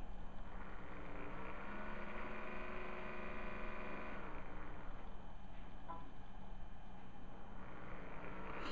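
Low steady hum. About a second in, a fainter pitched drone joins it, holds for about three seconds and then dies away.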